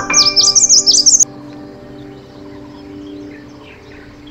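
Bird chirping: a loud, fast run of high twittering calls for about the first second, cut off suddenly, then fainter chirps. Soft background music plays underneath.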